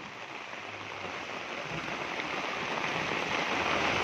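Heavy rain falling on a sheet of standing floodwater, a steady hiss that grows slowly louder.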